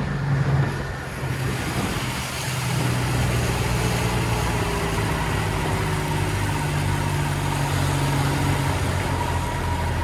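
A 2006 Honda 50 HP four-stroke outboard running steadily, pushing a rigid inflatable boat on the plane with a broad wake, mixed with wind and the rush of water. The engine note dips briefly about a second in and picks up again about three seconds in.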